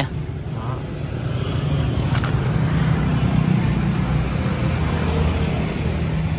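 Steady low rumble of a motor vehicle's engine, swelling over the first few seconds and then holding, with a single short click about two seconds in.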